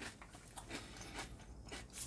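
A person chewing a mouthful of muesli with milk, faint and with small irregular crunches.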